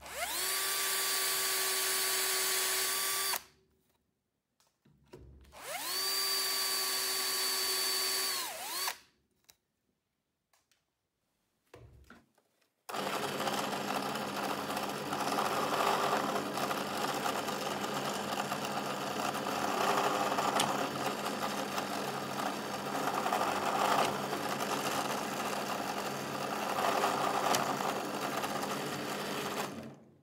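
Handheld electric drill boring through PVC in two short runs, each spinning up with a rising whine and stopping after about three or four seconds. From about 13 s a bench drill press runs steadily, getting louder four times as its bit cuts into the PVC plate.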